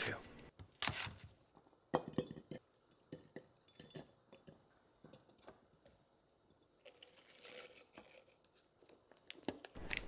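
A kitchen knife slicing through apple on a wooden cutting board, with a few sharp taps as the blade meets the board. Then cut fruit pieces set into a glass jar with light clinks, and a soft rustling stretch near the end.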